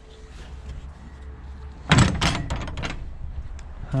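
Wooden shed door being pushed shut, a cluster of loud bangs and rattles of the boards about two seconds in.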